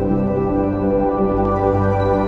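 Background music: slow, ambient new-age music with sustained, softly changing notes.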